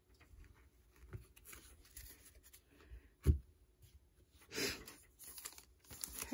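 Trading cards and foil card packs being handled on a table: faint shuffling and clicks, one sharp thump a little over three seconds in, and a louder rustle of a foil pack wrapper near five seconds.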